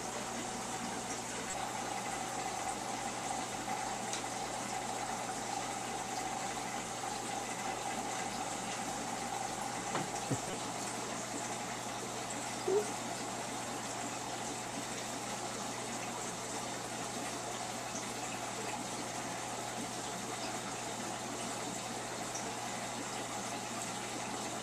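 Aquarium filter running: a steady rush of circulating water with a constant hum.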